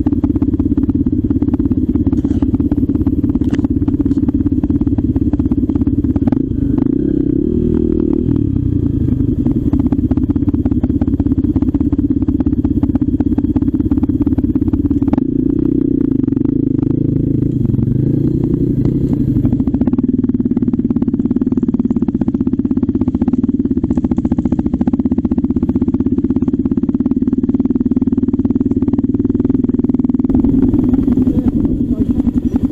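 Trail motorcycle engine running steadily under load up a steep, leaf-covered track. Its note shifts briefly about eight seconds in and again between about fifteen and twenty seconds in, with scattered light clicks throughout.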